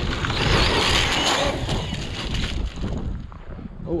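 Traxxas Sledge RC monster truck running on gravel: a loud hiss of tyres and spraying stones with its brushless motor whirring, fading after about two and a half seconds. A low wind rumble on the microphone sits underneath.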